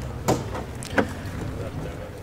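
Wind rumbling on the microphone, with two brief clicks, one early and one about a second in.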